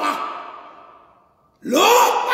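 A man preaching at full voice in a reverberant church hall. One exclaimed phrase dies away in the hall's echo, and a new one starts about one and a half seconds in with a rising pitch.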